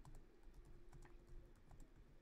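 Faint typing on a laptop keyboard: a run of soft, irregular key clicks.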